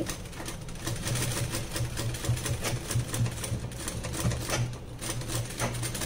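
Domestic sewing machine stitching a zip into a blouse: a rapid, even clatter of needle strokes over a steady hum, easing briefly just before the end.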